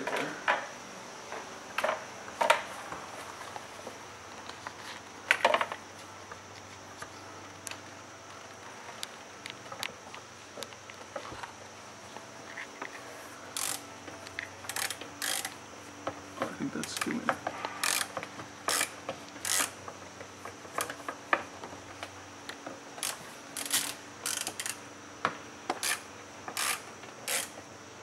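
Quarter-inch-drive ratchet clicking as it works a socket on a universal joint, with knocks of the tool against metal. The clicks are scattered at first and come in quick runs through the second half, the universal joint binding up a little.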